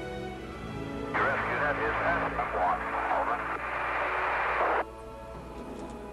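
Orchestral film score plays throughout. From about a second in until near the five-second mark it is overlaid by a loud din of many voices at once, which cuts in and out abruptly.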